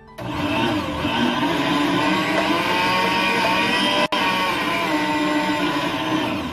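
Electric stand mixer's motor running steadily with its wire balloon whisk spinning in a steel bowl, whipping Swiss meringue up to stiff peaks. A steady motor whine, briefly cut off for an instant just after four seconds.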